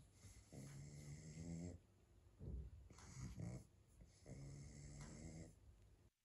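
A pug breathing noisily through its short, flat-faced airway, a faint snore-like rasp: two long drawn breaths of a little over a second each, about a second in and again past four seconds, with shorter snuffly breaths between.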